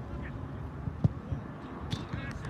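A football being kicked once, a sharp thump about a second in, during an outdoor small-sided soccer game, with a faint distant shout from a player and a low steady rumble.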